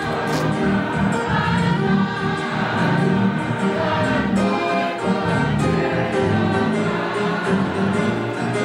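A choir singing gospel music.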